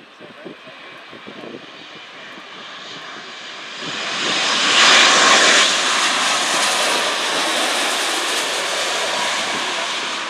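Boeing 787-9 Dreamliner's GEnx-1B jet engines at approach power as the airliner passes low overhead on final approach. The noise swells over a few seconds, is loudest about five seconds in, then holds steady as the jet moves away toward the runway.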